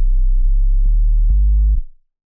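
Electronic track playing from an FL Studio project: a deep synth bass line stepping between low notes with a light tick on each beat, about twice a second. The sound cuts off suddenly near the end as playback is stopped.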